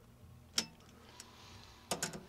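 A few light clicks and taps from a steel tape measure being handled against a wooden crate: one sharp click about half a second in, a faint tick, and another sharp click near the end.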